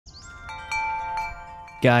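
Bright chimes in an intro sting: a short high rising sweep, then about four struck notes that ring on and overlap.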